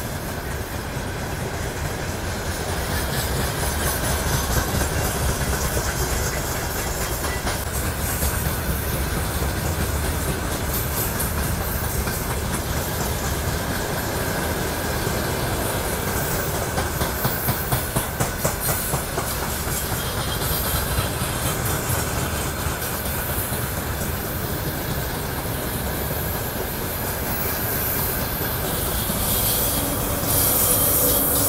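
Freight train of open wagons rolling past close by: a steady rumble of steel wheels on rail, with a quick run of rhythmic clacks over the rail joints about seventeen to nineteen seconds in.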